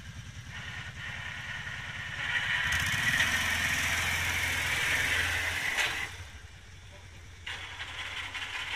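ATV engine running under load as the quad pushes snow with its front plow blade. It gets louder from about two seconds in, with a wide hiss over the engine, and drops back at about six seconds in.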